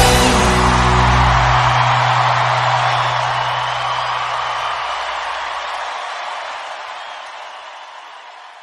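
A live band's final chord ringing out, a low bass note sustained until about five seconds in, under a crowd cheering, with the whole sound fading out steadily.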